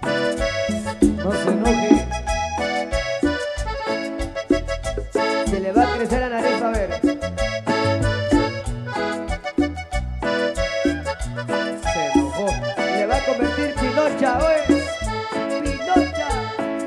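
A Guatemalan marimba orquesta plays upbeat instrumental dance music with a steady, driving beat.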